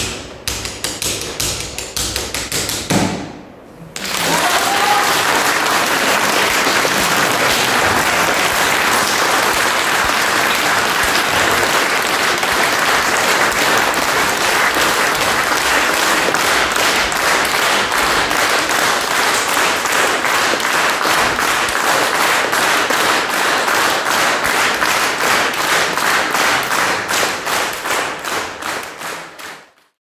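A button accordion (bayan) ends a piece with rapid, percussive chords, finishing about three seconds in. After a brief pause, an audience applauds steadily for the rest of the time, fading out at the end.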